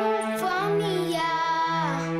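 A child singing a song over an instrumental backing of steady held chords, the voice gliding between long drawn-out notes.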